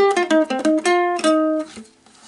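Mitchell ukulele picked note by note: a quick run of about eight single plucked notes, the last one held and fading out near the end.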